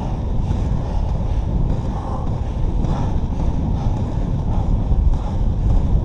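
Wind buffeting the microphone over the rumble of inline skate wheels rolling on asphalt, a steady low rush.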